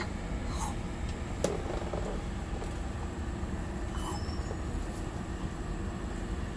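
Steady low outdoor rumble with faint voices, and a single sharp click about one and a half seconds in.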